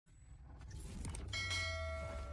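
Logo-intro sound effect: a rising swell over a low hum, then about 1.3 s in a bright bell chime struck once and left ringing.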